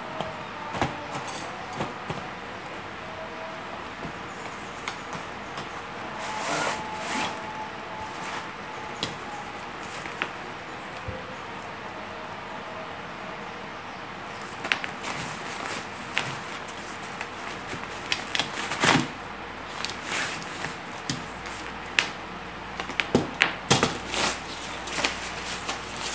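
Handling noise from unpacking a Yunteng tripod: cardboard box and black carry bag rustling and scraping, with short sharp clicks and knocks of parts set down on a table that come thicker in the second half. A steady background hiss runs under it.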